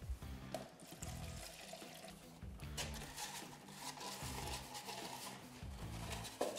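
Bleach being poured into a cut-down plastic milk bottle, a quiet liquid sound over soft background music with a repeating bass line.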